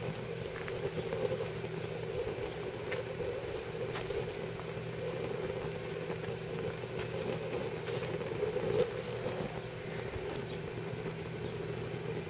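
Pellet-fired woodgas gasifier stove burning at full power with its 12-volt blower fan running: a steady low hum and rush of fan-forced flame, with a few faint ticks.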